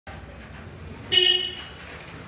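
A vehicle horn honks once, briefly, about a second in, over a low, steady street background.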